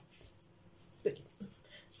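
Speech only: one short spoken word about a second in ("Bitte"), otherwise quiet room tone.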